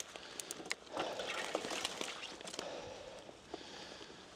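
Marin Larkspur 2 bicycle rolling over dry leaf litter and mud on a forest trail. The tyres give a faint, even crackle, with a few sharp clicks and rattles from the bike.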